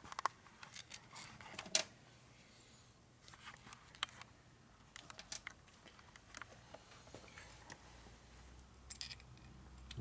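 Faint, scattered small metal clicks and clinks as the nut and washers are worked off a transmission shift fork shaft by hand, with a sharper click about two seconds in and a few more near the end.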